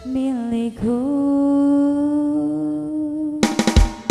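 Live dangdut band: a female singer holds one long note that slides and wavers at first, then steadies. About three and a half seconds in, a drum fill breaks in.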